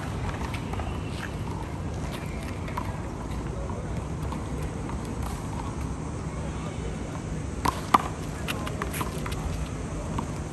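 A handball slapped and striking the concrete wall: two sharp smacks in quick succession about eight seconds in, then a few lighter ticks, over steady low background noise.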